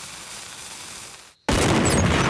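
Cartoon cannon fuse fizzing steadily for about a second and a half. After a brief pause the cannon fires with a sudden loud blast that carries on as a rushing noise.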